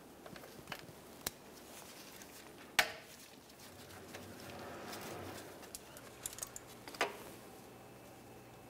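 Faint metallic clicks and knocks as a 13 mm nut is worked off the starter's main cable terminal. A sharp metal knock nearly three seconds in and another about seven seconds in each ring briefly, with smaller ticks between them.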